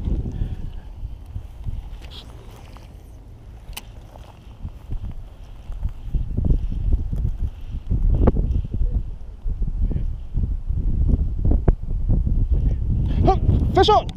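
Outdoor wind buffeting the microphone, with rustling from handling, as an uneven low rumble that grows louder about six seconds in.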